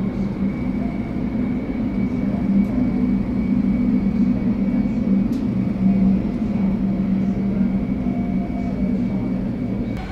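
Jet airliner engines running steadily on the ground: a continuous low rumble with a steady high whine above it.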